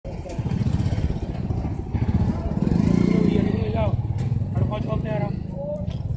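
An engine running steadily close by, with people's voices calling out over it in the second half.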